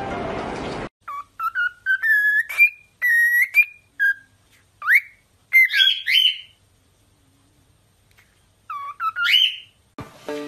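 Cockatiel whistling a string of short clear notes and quick upward-sliding whistles, breaking off for about two seconds before a few more near the end. Music plays for the first second, then cuts off.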